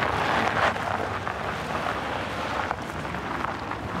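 Audi saloon car driving off, its engine and tyre noise fading gradually over a few seconds.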